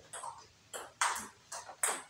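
Table tennis balls clicking sharply off bats and bouncing on the table in a quick run of about five hits during a multiball forehand drill.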